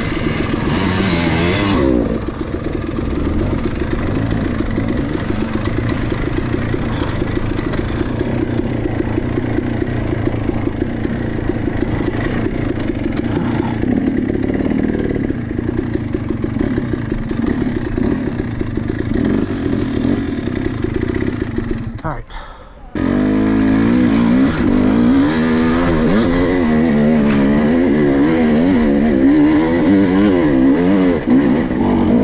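Dirt bike engine running on a rough woods trail, its revs rising and falling as the throttle is worked. About three quarters of the way through the sound drops out briefly, then comes back with quicker up-and-down revving.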